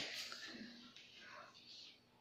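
A boy's faint whispering, fading to near silence near the end.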